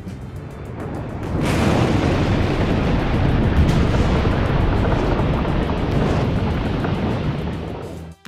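Background music covered by a loud rushing, rumbling noise that swells in about a second and a half in, holds, and fades near the end, as green baking-soda-and-vinegar foam pours up out of a plastic bottle.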